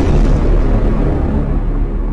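Cinematic explosion sound effect: a deep, loud rumbling boom that carries on steadily.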